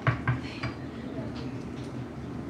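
Wooden chopsticks knocking against a small ceramic dish: two sharp clicks in quick succession at the start, then a few lighter clinks.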